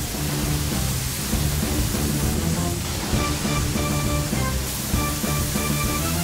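Background music with held notes over a steady rushing hiss of fire-hose water spraying onto a burning barbecue. Higher music notes come in about halfway through.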